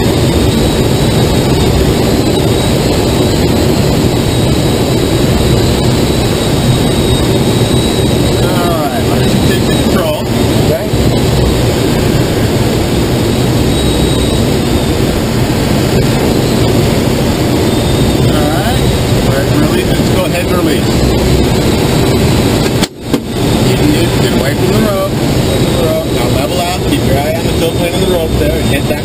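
Steady rush of air streaming past a sailplane's canopy in gliding flight, loud and even inside the cockpit, with a brief dropout about three-quarters of the way through.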